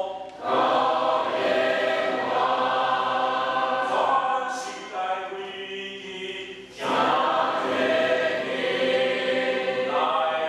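A mixed choir singing a hymn together, sustained phrases with a short break for breath near the start and another about seven seconds in.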